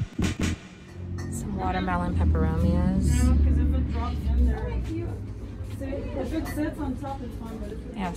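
Indistinct voices with no clear words, over a low rumble that is strongest from about two to four and a half seconds in.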